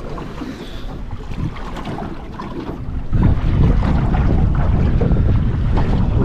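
Wind buffeting the microphone over water lapping against a small aluminium boat in choppy water. The wind gusts markedly louder about three seconds in.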